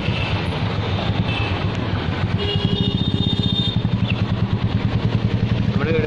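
Street traffic with a motorcycle or scooter engine running close by. Its low rumble turns into a fast, even pulsing from about halfway through, and a brief high steady tone sounds near the middle.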